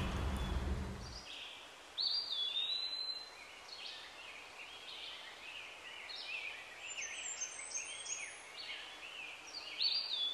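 Small birds singing and chirping: a clear whistled call that drops and then holds its pitch about two seconds in, a run of short high chirps after it, and the same whistled call again near the end.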